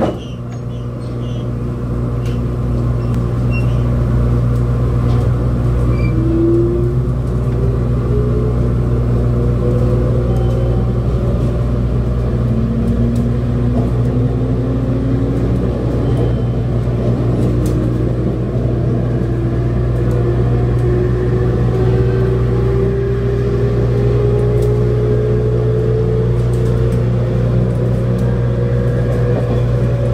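JR Kyushu 811-series electric train pulling away from a station, heard from inside the car: a steady low hum, with a motor whine that starts a few seconds in and climbs slowly and evenly in pitch as the train gathers speed.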